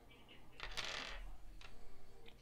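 A short metallic clatter, like small metal parts being handled, lasting about half a second from just after the start, followed by a faint single click.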